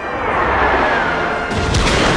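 Orchestral film music swelling, with a falling tone in the first second. About one and a half seconds in comes a sudden loud crash, followed by a couple of further strikes.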